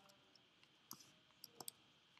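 Faint computer mouse clicks, four short sharp clicks in the second half, with near silence around them.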